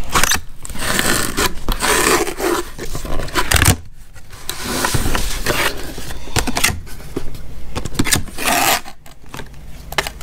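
Cardboard box being opened by hand: the tape seal pulled free and the cardboard flaps scraping and rubbing, in two long stretches with a short break about four seconds in.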